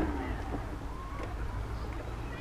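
Steady low rumble of wind and motion on the microphone while riding, with a sharp click at the very start and a faint high call or two over it.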